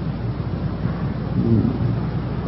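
A pause in a spoken sermon recording, filled with the recording's own steady hiss and low hum. A faint, brief vocal sound from the speaker comes about one and a half seconds in.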